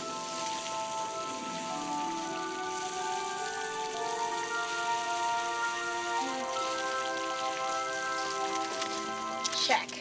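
A garden hose punched full of small holes sprays a fine mist of water with a steady hiss, under background music of long held notes.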